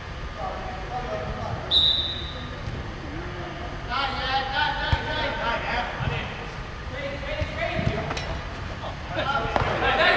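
Five-a-side football game: a short, high referee's whistle about two seconds in, men shouting across the pitch, and a few sharp knocks of the ball being kicked.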